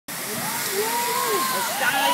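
Heavy rain pouring down, a steady rushing hiss of water, with voices talking over it.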